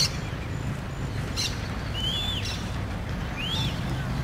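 Birds calling, a few sharp high chirps and two arched whistled calls, over the steady low rumble of an approaching GE C30 diesel locomotive working under its one running engine. A short click comes right at the start.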